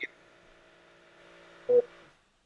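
A faint steady hum made of several held tones, over a call's audio line. A spoken word cuts in briefly at the start and again near the end.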